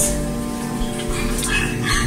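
Small bare woofer playing a 30 Hz sine test tone from an amplifier: a steady low tone with many evenly spaced overtones.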